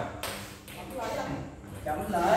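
Indistinct voice speaking briefly about a second in, over a low steady room hum, with no ball strikes.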